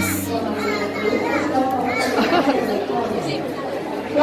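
Chatter of many overlapping voices, children and adults, in a large hall. A steady low hum of music cuts off within the first half second.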